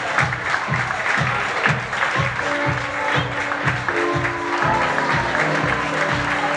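Audience applauding over background music with a steady beat.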